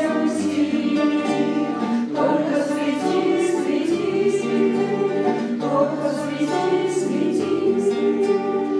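A group of voices singing together, accompanied by several acoustic guitars strumming chords.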